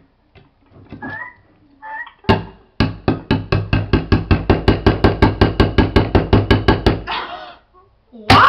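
A metal can being struck fast and over and over with a knife, about seven blows a second for some four seconds. It starts a little over two seconds in and stops about a second before the end. The can is being hacked at to break it open.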